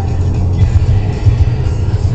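Steady low road rumble inside a moving car's cabin, with music playing underneath.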